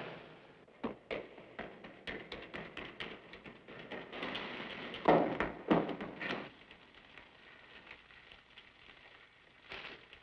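Footsteps echoing in a concrete storm-drain tunnel: a run of sharp, irregular steps, with two heavier thuds about five seconds in, then only faint scattered taps.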